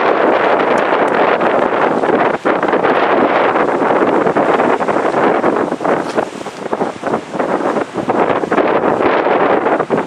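Wind buffeting the microphone: a loud, steady rush with several brief dips where gusts let up.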